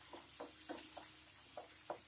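A spatula stirring coriander paste in a nonstick frying pan: faint, irregular scrapes and taps, about seven in two seconds, as the paste cooks down in oil.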